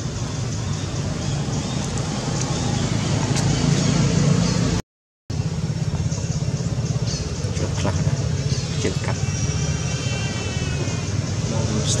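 Steady low outdoor rumble, cut off completely for about half a second around five seconds in, with a high wavering call around nine to ten seconds in.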